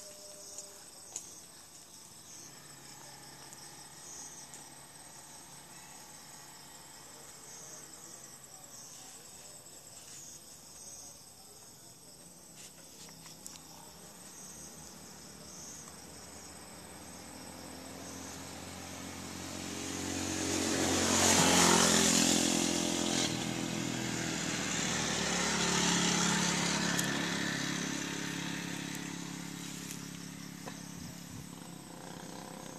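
A motor vehicle's engine approaching and passing, growing louder from about two thirds of the way in, loudest shortly after, then fading out. Faint high insect chirping runs underneath.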